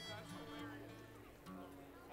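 A bluegrass band's acoustic string instruments being tuned: a few quiet single notes, plucked and held, rather than a song.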